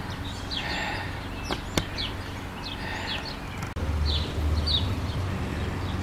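Small birds chirping in short, repeated calls over outdoor background noise, with two sharp clicks about a second and a half in. Near the end a steady low hum comes in.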